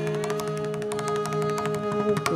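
Carnatic concert music: a held note over a steady drone, with scattered mridangam strokes. Ornamented, wavering melody takes up again just after.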